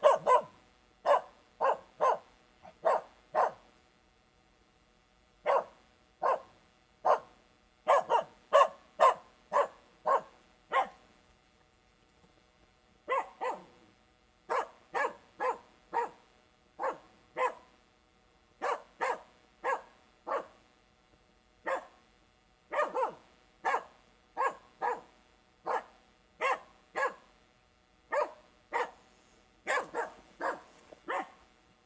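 Finnish Spitz barking at a distance, a long series of short, sharp single barks about one to two a second, in runs broken by two brief pauses. It is a bird dog's bark-pointing bark given with no grouse in front of it, the over-excited false barking of a first day out.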